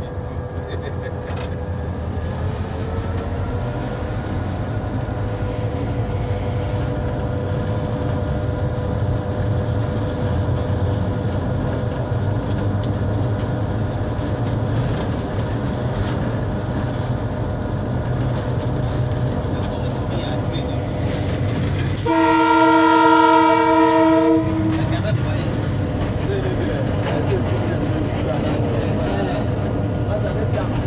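Diesel locomotive running, heard from inside its cab, a steady rumble whose tones rise a few seconds in as it picks up power. About three-quarters of the way through, the locomotive's horn sounds one loud blast of about two and a half seconds.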